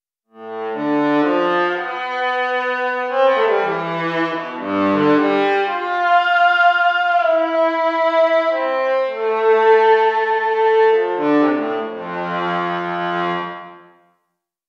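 Surge XT software synthesizer playing a work-in-progress cello patch: a pulse-wave oscillator through a 12 dB lowpass filter whose cutoff follows finger pressure on an MPE controller. It plays a slow phrase of sustained, partly overlapping notes, each growing brighter and duller as the pressure changes, with a brassy tone.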